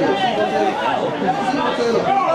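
Several spectators' voices talking over one another at once, an indistinct chatter with no single clear speaker.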